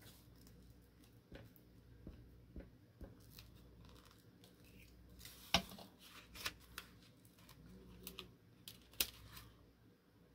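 Paper being handled and pressed down while gluing: faint, scattered rustles and small taps, the sharpest tick about five and a half seconds in.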